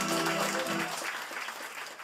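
Audience applause over the last held low note of an electronic keyboard, which fades out about a second in; the clapping then thins and fades.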